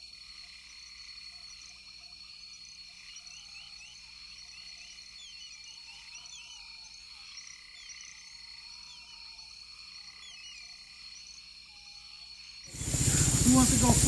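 Faint reed-marsh chorus: frogs croaking, with many short high chirping calls over a thin steady high tone. Near the end, loud noise and a voice cut in.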